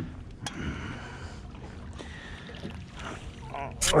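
Water lapping against the side of a small fishing boat, with wind on the microphone and a few light knocks. A single sharp splash comes right at the end as the hooked tautog is pulled up at the surface beside the hull.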